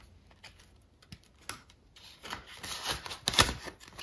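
Hands turning the plastic pouch pages of a ring binder and handling paper banknotes: a run of small clicks and rustles, loudest about three and a half seconds in.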